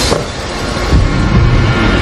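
Loud, dense rumbling noise with a pulsing low end and no clear tones, most likely a produced sound-design or score rumble.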